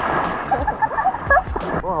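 Sea water splashing and sloshing around swimmers who have just jumped in, loudest at the start and fading within about half a second, with voices and laughter and a 'whoa' near the end over background music.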